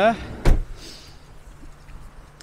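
The sliding side door of a Mercedes Vito van shut with a single sharp thud about half a second in.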